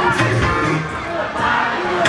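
Live Bongo Flava music played loud through a concert PA, with a steady bass line, and a large crowd shouting along over it.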